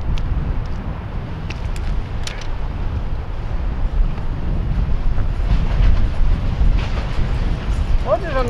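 Wind buffeting the microphone on an open seawall makes a loud, steady low rumble. A few light clicks come from fishing gear being handled.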